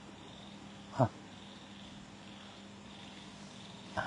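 A quiet pause with faint background hiss and a steady low hum. About a second in comes a single short animal yelp that falls quickly in pitch.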